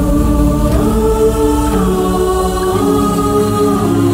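Dramatic background score: choir-like voices hold long notes that step slowly in pitch over a dense, low bass.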